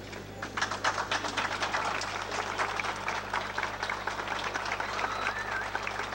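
A crowd applauding with dense, irregular clapping that begins about half a second in.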